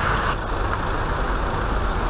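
Road traffic with heavy loaded dump trucks running close by: a steady low engine and tyre rumble. The high hiss drops away about a third of a second in.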